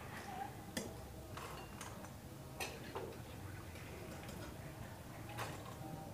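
About six light, scattered clicks and taps as fried rice-flour nachos are lifted from a steel wok and dropped into a steel bowl, metal and crisp chips knocking against the steel, over a faint steady hiss.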